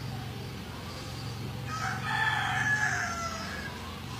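A bird's call, drawn out for about a second and a half near the middle, falling in pitch at its end, over a steady low hum.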